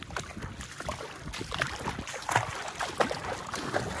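Feet wading through a shallow creek: water splashing and sloshing irregularly with each step.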